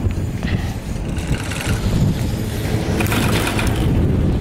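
Wind buffeting the microphone on a moving chairlift: a heavy low rumble throughout, with brighter rushing gusts about a second in and again around three seconds in.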